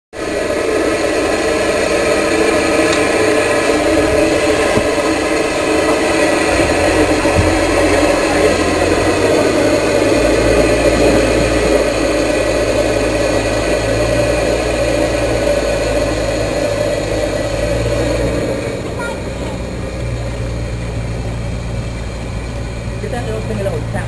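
Steam venting from the narrowboat's steam boiler: a loud, steady rushing hiss with a ringing, tonal edge that eases off about eighteen seconds in, with a low steady hum under it from several seconds in.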